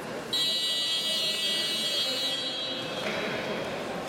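Wrestling match timer buzzer: a loud, steady, high-pitched electronic tone starts suddenly about a third of a second in and fades away over the next two seconds or so.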